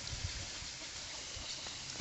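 Quiet, steady outdoor background hiss with no speech, and a couple of faint soft knocks about a quarter second in.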